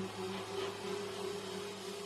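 Fading tail of a low, steady ringing tone with a higher overtone, the intro sound of a hip-hop track, over a faint hiss.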